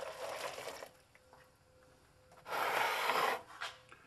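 Just-boiled water being poured out of a metal camp-stove cup, in two spells: the first trails off about a second in, the second, shorter pour comes near the three-second mark.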